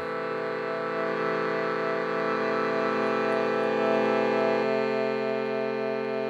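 Indian shruti box, a hand-pumped bellows instrument with fixed free reeds, sounding a steady drone of several held notes at once, one of them beating with a slow wobble. About three-quarters of the way through some of the lower notes drop away and the drone thins.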